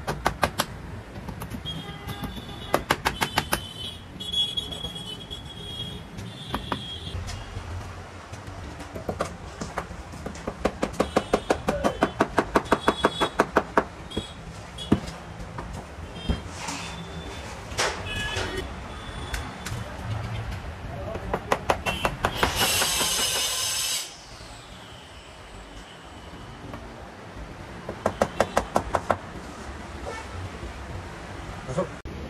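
Small hammer tapping nails into a wooden frame at the edge of upholstered wall panels, in runs of quick strokes, about four a second.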